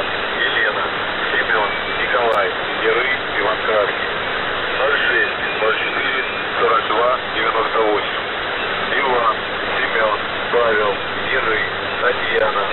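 A voice reading a coded Russian military message from the shortwave station 'The Pip', received on single sideband through a steady static hiss and narrow-band radio audio.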